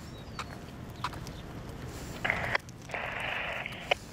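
Police radio scanner giving two short bursts of static a little past halfway, with a few faint clicks.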